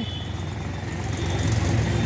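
Low rumble of a motor vehicle's engine running, growing steadily louder.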